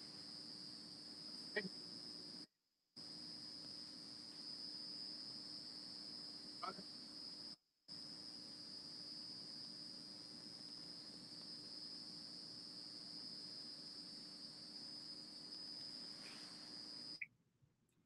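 Faint steady high-pitched tone with a low hum beneath it, on an open video-call audio line while a participant's sound is being sorted out. The line cuts out to silence briefly about two and a half seconds in, again about eight seconds in, and near the end.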